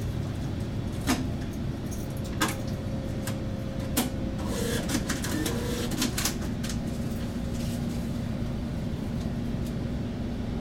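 MAN Lion's City CNG city bus idling at a standstill, heard from the driver's cab: a steady low engine rumble with several sharp clicks and rattles. A faint steady hum drops to a lower pitch about two-thirds of the way through.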